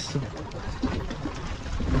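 Wind buffeting the microphone over choppy harbour water, a steady low rumble with the water moving underneath.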